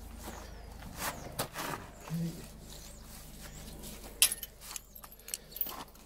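Scattered metal clicks and clinks of a steel trailer hitch lock being handled on the coupling as its holes are lined up for the padlock, with the sharpest click about four seconds in.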